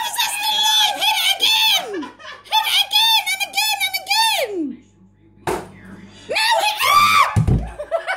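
Women screaming and shrieking in two runs of high-pitched bursts, scared by a large wasp, with a sharp knock about five and a half seconds in and a low thud near the end.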